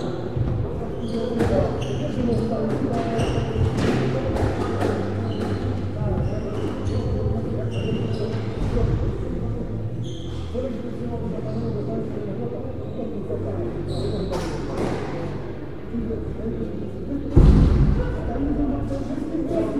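Squash rally: the ball cracking off rackets and the court walls in quick succession, with sneakers squeaking on the wooden floor, over a hum of voices in the hall. The hits thin out as the rally ends, and a loud thump comes near the end.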